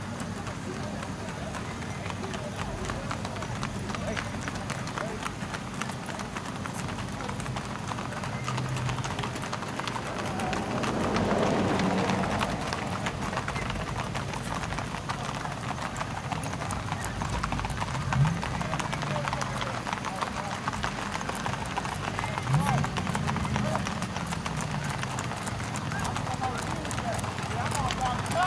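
Many horses' hooves clip-clopping on an asphalt road as a line of riders passes at a walk, a dense, steady patter of hoofbeats.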